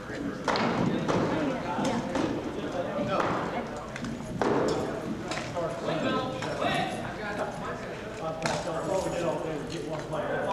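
Rattan weapons striking shields and armour in SCA armoured sparring: several sharp knocks at irregular intervals, with voices talking in the background of a large hall.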